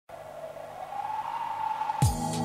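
Opening of a 1990s g-funk rap track: a single sustained tone, slowly rising in pitch and getting louder over a faint hiss, building up to the start of the beat.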